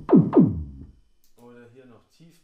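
Analog kick drum synthesized on a Roland SH-101, struck twice in quick succession in the first half second. Each hit is a loud, deep thud whose pitch drops fast, heard while the kick is being slightly distorted through outboard processing. A faint voice follows near the end.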